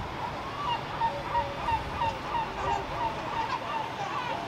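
A bird calling in a rapid series of short notes, about three a second, each dipping slightly in pitch, with a second, lower-pitched series overlapping, over steady outdoor background noise.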